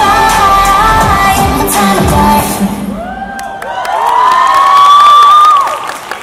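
K-pop track with singing and a heavy beat playing over the hall's speakers, ending about halfway through. The audience then cheers with high, drawn-out screams and whoops, loudest near the end before they drop away.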